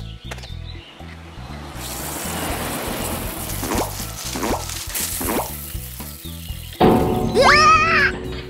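Cartoon sound effect of water sprinkling from a watering can onto a flower bed, a steady hiss over background music, with a few short rising tones in the middle. Near the end a louder effect comes in, followed by a startled rising cry.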